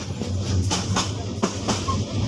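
Added train sound effect: a train running over rail joints, a steady low rumble with sharp clicks about three times a second.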